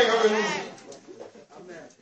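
A man's voice trailing off on a falling, drawn-out tone, then a quiet stretch with only faint background sound.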